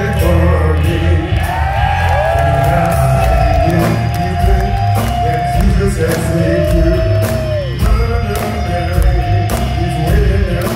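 Live rock band playing through a hall's PA: drums, bass guitar and electric guitar at full volume. Long held notes swoop up and fall away twice over the beat.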